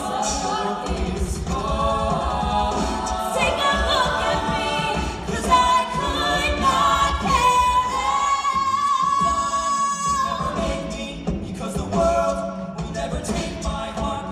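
A cappella group singing an up-tempo arrangement, all voices and no instruments, over vocal percussion. One voice holds a long high note from about six seconds in until about ten seconds in, then the group picks up again.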